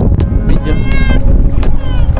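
Wind buffeting the microphone, with a high-pitched voice calling out briefly about a second in and a shorter rising call near the end.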